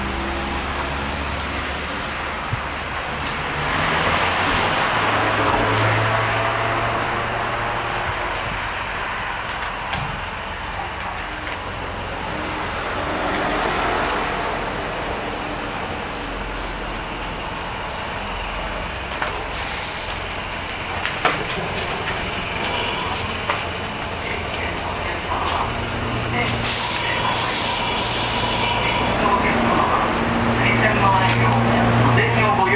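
Steady outdoor street and station noise with road vehicles passing, swelling twice. Near the end comes the steady hum of a stationary electric train's onboard equipment.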